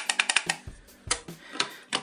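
Light, irregular clicks and taps of hard plastic as a mushroom-shaped USB lamp cap is handled and fitted onto the top of a USB charging station.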